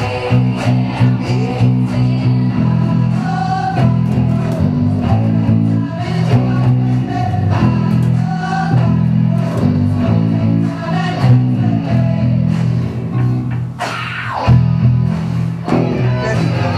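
Several electric bass guitars playing a line together along with a rock record, with a singing voice from the record over the top.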